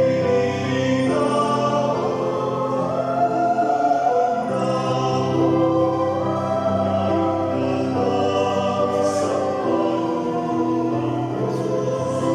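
Mixed choir of men and women singing in parts, holding long notes that step from one chord to the next.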